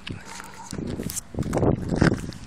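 Phone microphone handling noise: knocks and rubbing as the phone is gripped and swung around, with a voice joining in during the second half.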